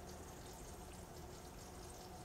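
Faint, steady trickle of aquarium water with a low hum beneath it, barely above room tone.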